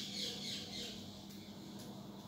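A squirrel's high-pitched squeaking calls: a quick run of short, falling chirps in the first second that then fade.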